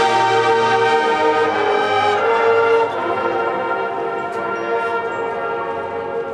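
High school marching band playing held, brass-heavy chords, loud at first, then dropping in level about three seconds in and fading away.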